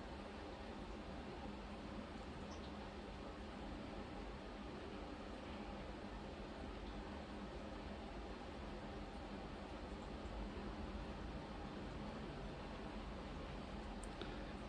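Quiet, steady background hiss with a faint low hum, and no distinct sounds standing out.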